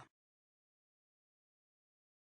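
Silence, after the last instant of a spoken word right at the start.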